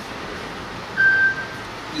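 A pause between spoken phrases: the steady background hiss of the room and sound system, with a brief thin, high, steady tone about a second in.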